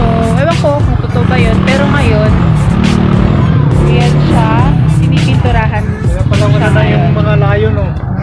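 A woman talking, with background music and a steady low rumble underneath.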